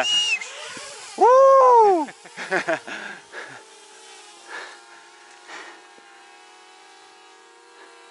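A man's loud whooping cry, rising and then falling in pitch and lasting under a second, about a second and a half in. It is followed by scattered short sounds, and a faint steady hum of several held tones runs through the second half.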